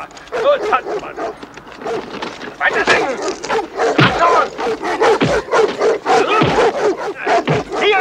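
Dogs barking repeatedly amid shouting human voices.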